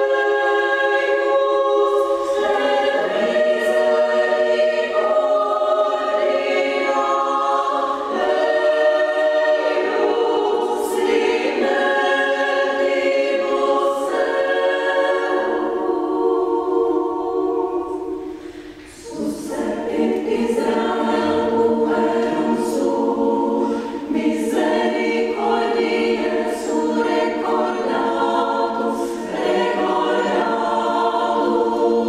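Women's chamber choir singing a cappella, with a brief drop at a phrase break about 18 seconds in before the voices come back in.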